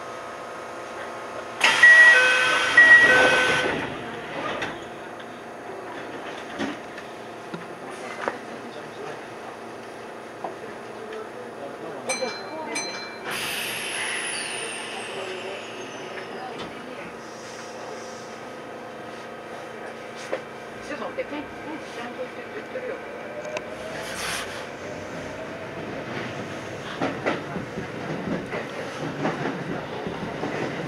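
Kintetsu electric commuter train standing at a station, heard from the driver's cab. A loud two-tone chime rings about two seconds in and short beeps sound near the middle. From about twenty-three seconds the traction motors whine, rising in pitch as the train pulls away.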